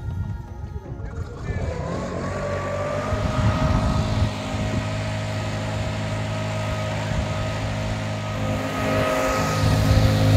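An engine running steadily with a constant hum; its pitch rises briefly about a second and a half in, then holds.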